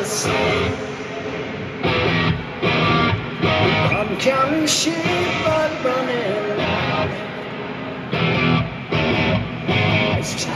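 Live rock band playing loudly through a concert PA: distorted electric guitar chords with bass and drums, coming in blocks that stop and restart, with a quieter stretch about a second in and another near the end.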